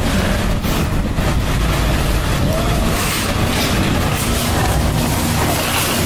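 Wind buffeting a handheld camera's microphone while the camera is carried along at a walk, a steady low rumble with rustling handling noise.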